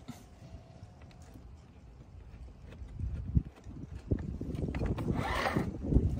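The drive of a modified Power Wheels car spinning its raised rear wheel with a rough rumble and knocking, then stopped by a 3D-printed mechanical disc brake, ending in a sharp loud hit as the brake grabs. The first couple of seconds are quiet.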